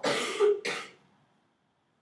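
A man coughing twice in quick succession, clearing his throat, the first cough longer than the second.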